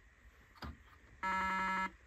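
Simon electronic memory game sounding one of its pad tones: a faint click, then a buzzy electronic tone held for under a second. It plays as the pad's bulb, just screwed back into its socket, lights up.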